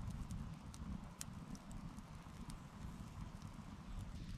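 Wood campfire crackling, with scattered sharp pops over a low, steady rumble; the loudest pop comes a little over a second in.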